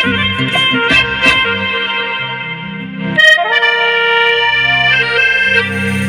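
Live band playing an instrumental Hindi film song, with a saxophone lead over accordion, keyboard and hand drums. The drum strikes stop about a second and a half in. After a crash about three seconds in, the band holds long sustained notes.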